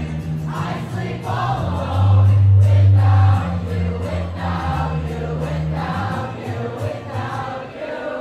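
Live concert music through a venue's PA: deep sustained bass notes and a steady beat under singing, the bass swelling loudest from about two seconds in to just past three.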